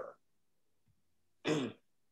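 A man clears his throat once, briefly, about one and a half seconds in; the rest is near silence.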